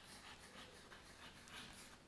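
Chalk scratching faintly on a chalkboard as a word is written by hand.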